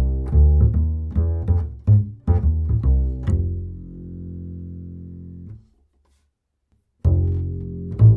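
Rubner double bass strung with Galli BSN 920 Bronze strings, played pizzicato in a walking bass line of evenly plucked notes, ending on a held note that rings and fades for about two seconds. After a second of dead silence, the same bass, now on Galli BSN 900 strings, starts the walking line again near the end.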